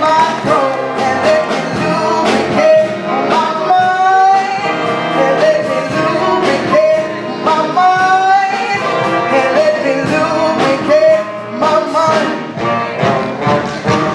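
A solo voice sings a stage-musical song into a hand microphone over instrumental accompaniment, holding long notes with vibrato.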